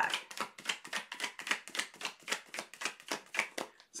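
A deck of tarot cards being shuffled by hand: a fast, even run of light card flicks, about eight a second.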